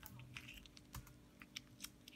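A cat chewing corn kernels off the cob: a faint, uneven run of small sharp clicks from its teeth.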